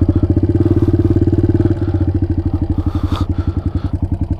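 Suzuki DR200's single-cylinder four-stroke engine running at low speed with a rapid, even beat. The beat eases a little about halfway through as the bike slows to idle.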